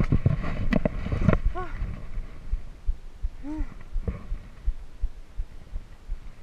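Giant Trance X3 full-suspension mountain bike riding over a rough dirt trail, its rattles and knocks picked up by a chest-mounted camera. The knocks come thick and fast for the first second or so, then thin out to scattered low thumps.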